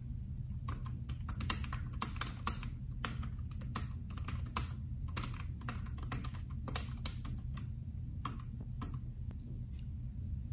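Typing on a Bluetooth keyboard: a quick, irregular run of key clicks that starts about a second in and stops just before the end, over a steady low hum.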